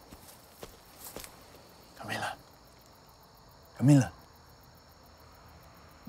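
Two short, low voice sounds, about two seconds apart, the second much louder, over a faint steady high chirring of crickets. A few faint clicks come in the first second.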